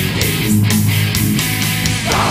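Death/thrash metal recording: a distorted electric guitar riff over bass, with drum and cymbal hits at a steady beat.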